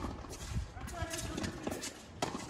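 Tennis rally on an outdoor hard court: light taps of footsteps and ball bounces, with a short voice-like call about halfway through.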